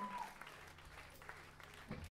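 Audience applauding after a song, thinning out and fading away, with a steady low hum underneath and a short thump near the end.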